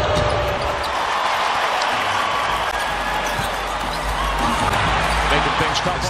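Basketball arena crowd noise, a steady hubbub of many voices, with a basketball being dribbled on the hardwood court.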